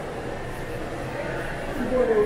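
Indoor shopping-mall ambience: indistinct voices of shoppers over a steady background hum in a large, hard-floored hall.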